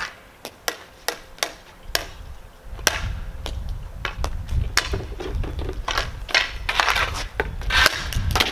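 A hockey stick blade tapping and clicking against a small ball on an asphalt driveway: irregular sharp taps, with a low rumble joining in about three seconds in.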